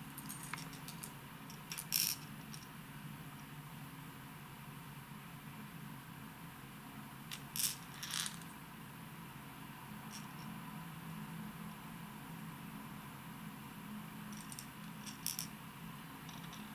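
Hard plastic fishing lures handled by hand: a few short, sharp clicks and rattles as lure bodies and treble hooks knock against each other, spread out with long gaps, over a faint steady low hum.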